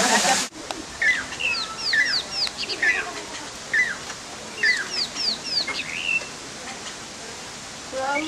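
Birds calling: short high chirps, several falling sharply in pitch, in two bouts, one about a second in and another about five seconds in, over a steady background hiss.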